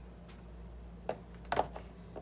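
A few sharp plastic clicks and knocks as a fish-food container is handled and its lid opened, over a steady low hum.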